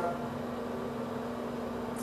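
Steady low electrical hum with a faint hiss underneath, unchanging throughout: room background noise.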